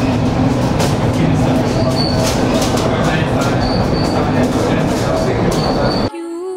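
Funicular car running on its rails, heard from inside the car: a steady loud rumble of wheels on track with scattered clicks and several brief high-pitched wheel squeals.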